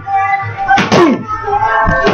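Boxing gloves smacking focus mitts: a sharp hit about halfway through and a duller low thump near the end, over steady background music.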